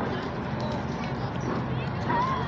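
Outdoor crowd ambience: faint, scattered voices of many people over steady background noise, with footsteps on a concrete walkway.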